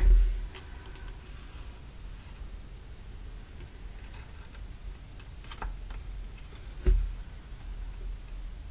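Quiet handling of a cardstock panel while thread is hand-stitched through its pierced holes with a needle: a few faint, scattered ticks, and a low bump just before seven seconds in.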